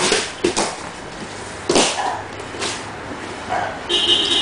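Grappling on a vinyl-covered mat: several short, sharp bursts of forceful breathing and grunting mixed with bodies scuffing and slapping on the mat as one man is taken down and pinned.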